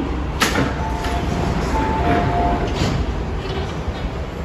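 MTR M-train doors and platform screen doors sliding open with a knock, followed by a few short electronic chime tones over the low hum of the stopped train.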